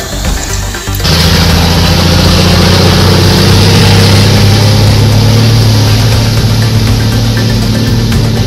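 A truck driving through floodwater over a road: a steady engine rumble under a loud rush of water spraying from the wheels, starting abruptly about a second in.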